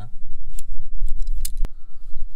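A small red handheld cable stripper clicking a few times as it is handled in a gloved hand. The sharpest click comes about one and a half seconds in, over a steady low rumble.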